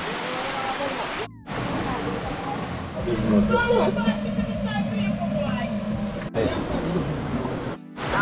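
People talking and laughing over a steady rush of river water, broken by abrupt cuts where the sound drops out.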